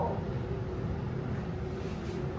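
Kone MiniSpace traction lift car running with a steady low hum and rumble as it comes in to stop at the floor, its doors still shut. The end of the recorded floor announcement is heard at the very start.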